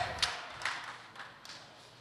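Faint room sound during a pause in speech, with a couple of soft taps in the first second, fading almost to quiet.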